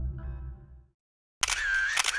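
Closing background music fading out over the first second, then a brief silence. Near the end an electronic logo sound effect starts, with a sharp click and a high warbling tone.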